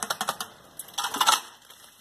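Rapid clicking and rattling of a shovel jabbed into wet concrete inside a steel rebar cage, hand-vibrating the fresh concrete to settle it. The clicks run through the first moment, die down, and return as a short burst about a second in.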